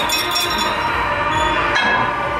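Steel weight-stack plates of a cable pulldown machine clinking, with a sharp ringing clink near the start and another near the end, over a continuous loud background.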